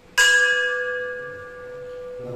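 A hanging bell struck once, about a fifth of a second in, then ringing with several tones that slowly fade.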